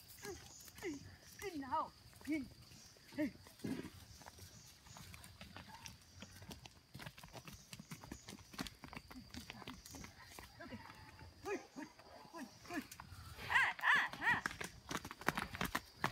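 Cattle walking past on a dirt track, their hooves clopping and knocking. Short voice calls come in the first few seconds, and a voice speaks briefly near the end.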